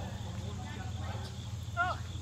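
Steady low outdoor background rumble with nothing distinct over it, then a woman's brief exclaimed "Oh" near the end.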